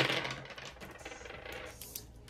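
Four small dice thrown onto a tabletop: a sharp clatter as they land, then a run of small clicks fading as they roll and settle.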